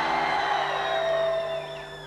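Live rock band sound: a held keyboard chord under a swell of crowd noise, with a high gliding tone that falls away near the end.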